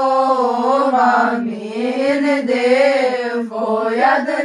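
A group of girls and young women singing a Christmas carol (colind) unaccompanied, in unison, with slow, long-held notes.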